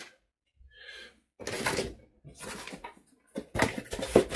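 A cardboard box being picked up and handled on a desk: a few short scraping, rustling noises with gaps between them.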